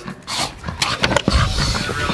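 A small dog making short, irregular noises with a ball toy held in its mouth.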